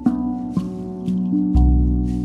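RAV steel tongue drum in B Celtic double ding playing slow, ringing notes, about four notes struck across two seconds. A deep shaman drum beat lands about one and a half seconds in.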